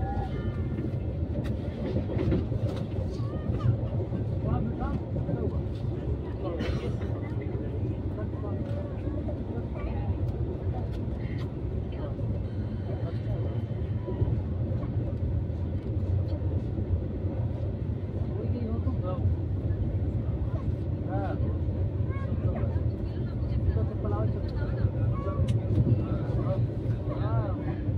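Moving passenger train heard from inside the coach: a steady low rumble of wheels on rails with scattered short clicks, and voices chattering in the background.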